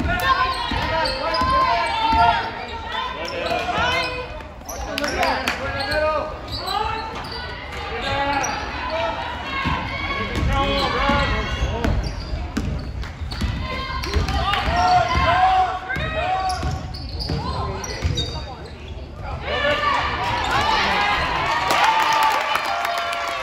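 Basketball being dribbled on a hardwood gym floor amid the talk and shouts of players and spectators. The voices swell near the end.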